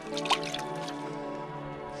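A hand brush dipped into a bucket of water: a brief splash and dripping about a third of a second in, over steady background music.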